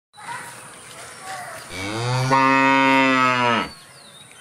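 A cow mooing: one long, even moo of about two seconds that starts a little under two seconds in and stops sharply.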